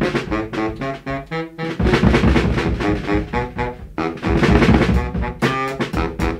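Jazz band recording: horn lines, likely saxophone and brass, over drum kit and bass. About a second in, the bass and drums drop out briefly, then the full band comes back in.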